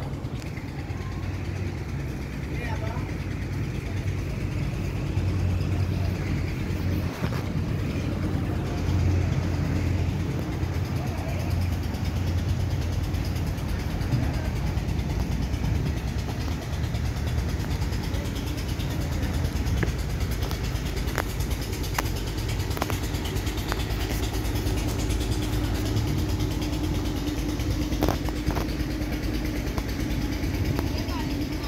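Strong wind buffeting the microphone: a low, uneven rumble that runs on without a break.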